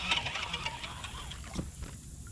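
Baitcasting fishing reel being cranked, giving a run of quick ticking clicks as line is wound in under the pull of a hooked fish.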